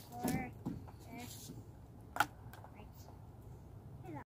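Faint, brief voices in the first second or so, then mostly quiet outdoor background broken by one sharp short click a little over two seconds in.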